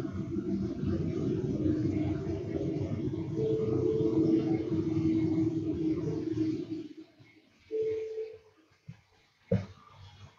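Low rumbling noise with a steady hum through it, which cuts off suddenly about seven seconds in; a brief hum follows about a second later, then a single click near the end.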